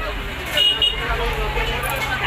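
Voices talking in the background, with a short high two-pulse toot about half a second in and a low steady hum underneath.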